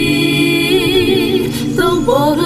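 Hip-hop song: sung vocals hold one long note, steady at first and then wavering, over a sustained low bass tone.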